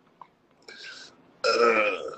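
A man laughing: a short breathy wheeze, then a loud voiced laugh in the last half second.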